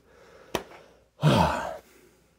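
A single sharp click about half a second in, then a man's audible sigh: a breathy exhale with a falling voiced tone, lasting just over half a second.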